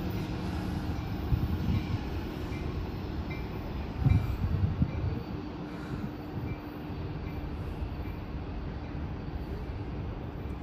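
Amtrak Capitol Corridor train pulling away from the station, pushed by its Siemens SC-44 Charger diesel-electric locomotive. The engine and rolling stock make a steady low rumble with a faint hum, and the rumble swells briefly about four seconds in.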